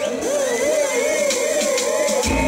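Live dub sound-system music in a breakdown with the bass cut out, carried by a warbling siren-like effect that swoops up and down about four times a second.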